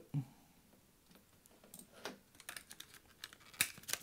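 Light clicks, taps and rustling of a small cardboard SSD box being picked up and handled, faint at first and growing busier over the last two seconds, with one sharper tap near the end.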